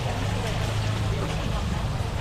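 Outdoor market ambience: a steady low hum with faint chatter of people around.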